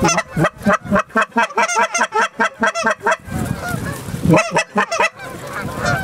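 Goose calls blown by hunters: rapid, loud honks and clucks, about five a second. They pause into fainter, more distant honking about three seconds in, then start again in a short burst.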